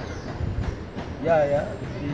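A low rumble with a few faint knocks in the first second, then a man's voice saying a short phrase about a second and a half in.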